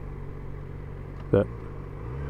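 Steady low drone of a Yamaha XJ6 Diversion F motorcycle under way: its inline-four engine running evenly at low load, mixed with road and wind noise.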